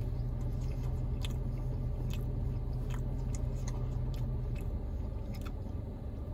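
A person chewing a mouthful of folded, baked pizza (a Papa John's Papadia) with the mouth closed, with faint scattered clicks. A low steady hum sits underneath and fades about four and a half seconds in.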